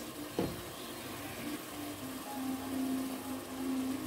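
Tomato-and-pepper sauce in palm oil sizzling faintly in a pot, with a single knock about half a second in. A steady low tone sounds through the second half.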